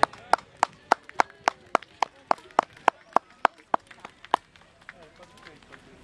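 Spectators in the stands clapping in a fast, steady rhythm, about three and a half claps a second, stopping about four and a half seconds in, with faint calls from the crowd behind.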